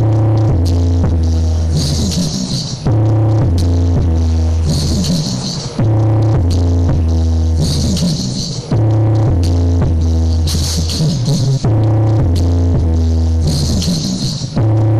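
Bass-heavy electronic dance music played loud through a stacked mini sound system of speaker cabinets. The deep bass is heavy, and the loop restarts about every three seconds.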